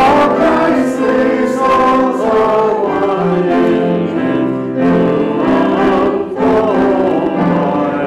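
A church congregation singing a hymn together, held notes moving from one to the next, with short breaths between phrases.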